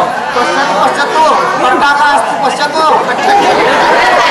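Many voices talking at once: loud, overlapping chatter with no single voice standing out.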